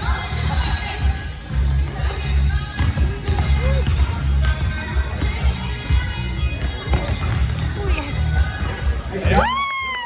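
Basketball game play on a hardwood gym floor: a ball bouncing and sneakers squeaking as players run, in a large echoing hall. A long, high squeak rises and falls shortly before the end.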